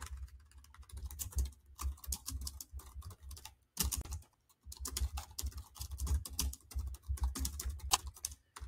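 Typing on a computer keyboard: a fast, irregular run of key clicks, with a couple of short pauses around the middle.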